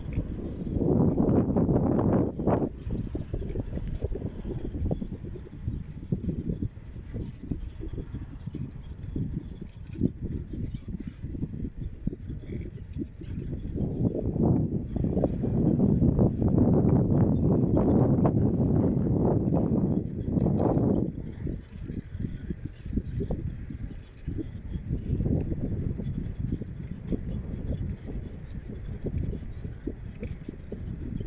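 Wind buffeting the microphone of a phone carried on a moving bicycle, a low rumble that swells twice, briefly near the start and for several seconds in the middle. Light clicks and rattles from the bike run through it.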